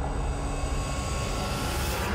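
Cinematic logo-reveal sound effect: a steady, dense rush with a heavy low rumble and hiss on top, like a passing jet.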